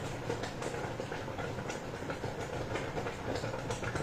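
Steady background noise with a few faint clicks scattered through it.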